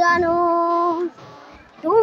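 A young boy singing unaccompanied. He holds one long steady note for about a second, pauses briefly, then slides up into the next note near the end.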